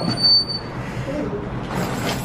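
Glass shop door squeaking with one short, high, steady squeal as it is pushed open.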